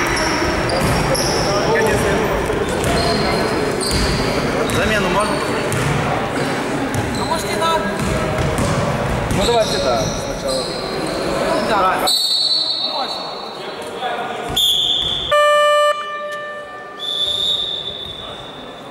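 Indoor basketball game in an echoing sports hall: the ball bouncing, sneakers squeaking on the court floor and players calling out. About fifteen seconds in, a loud electronic game buzzer sounds once, briefly.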